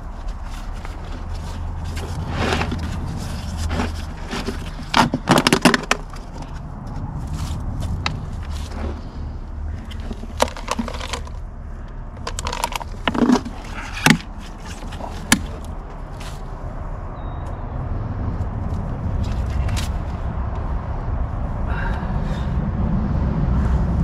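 A plastic bucket lid being pried off and the plastic bag inside pulled back: scattered clicks, scrapes and crinkling of plastic, over a steady low rumble.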